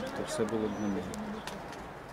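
A man speaking, in a language other than English, in a low voice; the words fade out after about a second.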